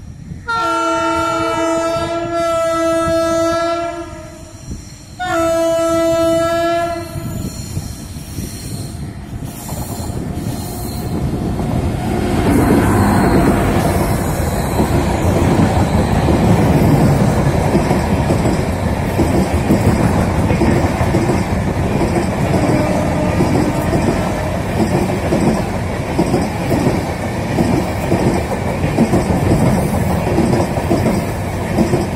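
WAP7 electric locomotive sounding its multi-tone horn in two long blasts, the first about three and a half seconds and the second about two. After that the rumble of the passing express train builds from about eight seconds in and stays loud as its coaches roll by on the rails.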